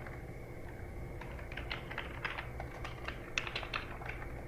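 Computer keyboard typing: irregular keystrokes, sparse at first and coming in quick clusters from about a second in, over a low steady background hum.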